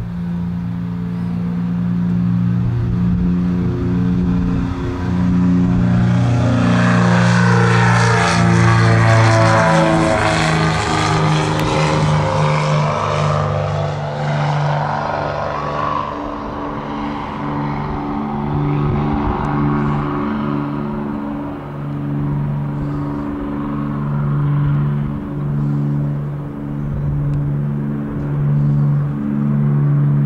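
Cessna 404 Titan's twin turbocharged piston engines and propellers at takeoff power, the sound swelling loudest about eight to twelve seconds in as the aircraft lifts off and passes close by. As it climbs away it settles into a steady, pulsing propeller drone.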